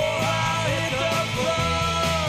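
Punk rock song playing: a band with electric guitar and drums keeps a steady beat under a sliding, held melody line.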